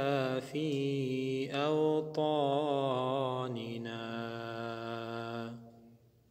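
A man chanting an Arabic dua in a slow, melodic, drawn-out line, his pitch bending through ornaments and then holding one long steady note before it fades out near the end.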